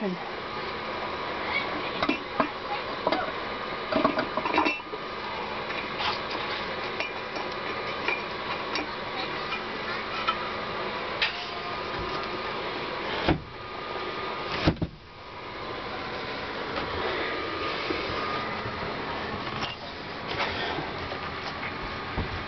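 Scattered metal clinks and knocks from the round steel air-cleaner housing and lid being set back onto the four-barrel carburettor of a Dodge 318 V8, with two sharper knocks about two-thirds of the way through, over a steady background hiss.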